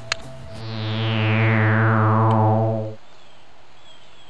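Synthesized sci-fi flying-saucer sound effect: a pulsing low electronic hum with a high whistle gliding downward over it. It cuts off suddenly about three seconds in.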